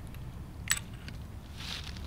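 Handling noise from a BCM AR-15 rifle as a single round is loaded: one sharp metallic click about a third of the way in and a brief scrape near the end, over a low steady rumble.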